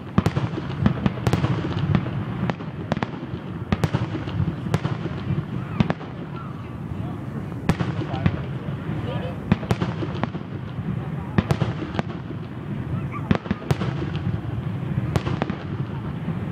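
Aerial fireworks bursting: an irregular string of sharp bangs and crackles, several close together at times, over the low murmur of a crowd.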